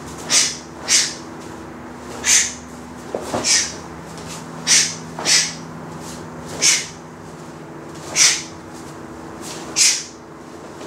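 A martial artist's sharp hissing exhalations, one short burst with each block and punch, about nine in all at an uneven pace, over a faint steady hum.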